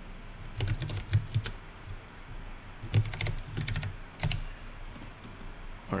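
Computer keyboard typing in three short runs of keystrokes, about one, three and four seconds in, while code is edited.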